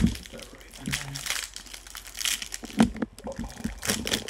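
Plastic wrapper of a fudgesicle crinkling and crackling as it is pulled open and off the bar, in irregular bursts with the sharpest crackles at the start and just under three seconds in.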